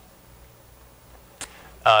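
A pause in a man's speech over a low steady room hum, broken by one brief click about one and a half seconds in, before he picks up again with "uh" near the end.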